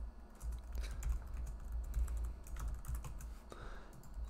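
Computer keyboard typing: a run of irregular key clicks as a line of code is typed.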